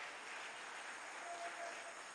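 Church congregation applauding softly, an even spread of clapping under the pause in the preaching.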